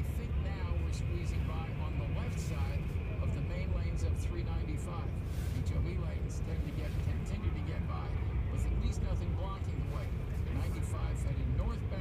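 Steady low road and traffic rumble inside a Tesla's cabin as it creeps along in stop-and-go traffic beside trucks, with a faint radio voice reading a traffic report underneath.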